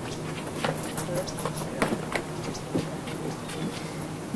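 Band gear being handled at a van: scattered knocks and clunks over a steady low hum, with faint voices.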